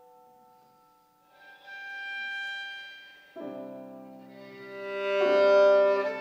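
Violin and piano playing a slow, gentle piece. A piano chord fades at the start, then a high violin note swells in and dies away. Piano chords enter under the violin about three and a half and five seconds in, and the violin builds to its loudest near the end.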